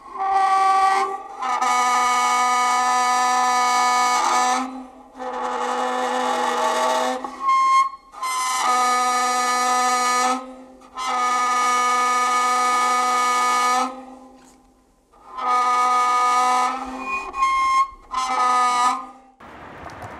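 A violin bow drawn across a homemade found-object instrument, a plastic box fitted with springs and wires, giving long, steady-pitched bowed tones. There are about eight strokes, most lasting two to three seconds, with short breaks between them.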